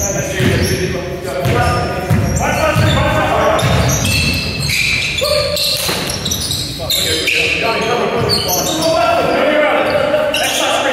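A basketball being dribbled on a wooden sports-hall floor, a run of regular bounces in the first half that ring in the large hall, with players calling out over it.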